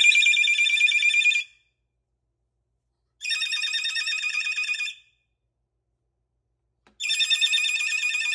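Moluccan cockatoo imitating a ringing telephone: three rings of rapid, high trilling, each about two seconds long, with pauses of under two seconds between them.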